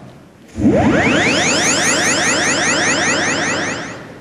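Magical whoosh sound effect: a fast chain of rising sweeps, about six a second, swelling in about half a second in and fading near the end, cueing a magic transport.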